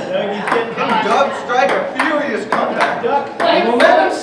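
Table-tennis rally: the ball clicks sharply off the paddles and the Kettler table in a quick back-and-forth series, about two hits a second, with spectators' voices in between.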